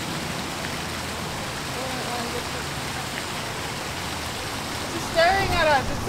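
Steady rushing outdoor noise, with faint distant voices about two seconds in and a person's voice starting near the end.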